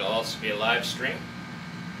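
A man speaking for about a second, then a short pause with a steady room hum underneath.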